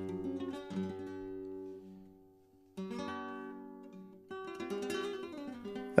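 Quiet acoustic guitar music: plucked chords ring and die away to a brief silence a little over two seconds in, then new chords come in twice more.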